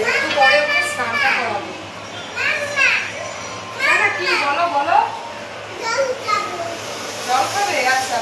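A toddler's high-pitched babbling and cries in several short bursts, each rising and falling in pitch.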